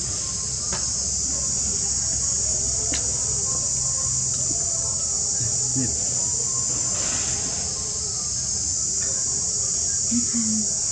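Steady, high-pitched insect drone.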